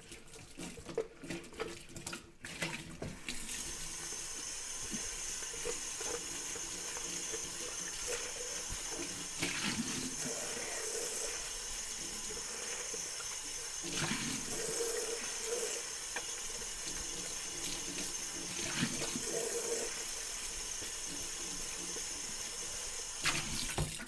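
Kitchen tap running into a plastic popcorn bucket in the sink as it is rinsed out with soapy water. The water comes on about three seconds in, runs steadily with a few louder swells as the bucket is turned under it, and shuts off just before the end.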